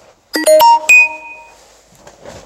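Xbox 360 startup chime playing through a CRT television's speaker: about four quick, bright, bell-like notes in under a second, the last one ringing out for about half a second.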